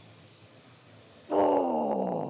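A man's long, strained grunt of effort, falling in pitch, starting just over a second in, as he forces out a heavy dumbbell press rep.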